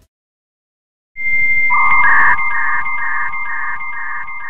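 Electronic beeping sound effect after about a second of silence. A steady high tone starts, a lower tone joins it, and a beep pulses about twice a second.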